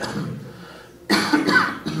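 A man coughing twice, about a second in, with his hand raised to his mouth.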